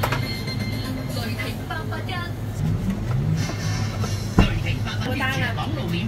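Meat cleaver striking a thick round wooden chopping block, once at the very start and once more, sharper and louder, about four and a half seconds in, over a steady low hum.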